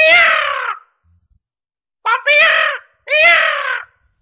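Recorded raven caws played through the speaker of an animatronic raven figure on a theme-park talking waste bin: three loud, drawn-out calls.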